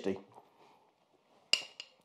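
A metal fork set down on a china plate: one ringing clink about one and a half seconds in, then a lighter tap just after.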